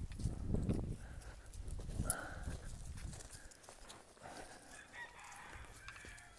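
A young cow's hooves and a person's footsteps on dry, leaf-strewn ground, with short clucks from chickens in the yard.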